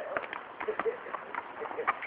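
Hooves of a pinto horse walking on grass under a bareback rider: soft, irregular footfalls.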